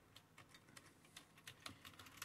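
Faint, irregular clicks of computer keyboard keys as a command is typed.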